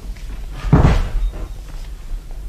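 A door shutting: a single thud about a second in, over a steady low hum from the old recording.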